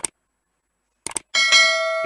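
Subscribe-button animation sound effect: two quick mouse clicks about a second in, then a bright bell ding that rings on and fades.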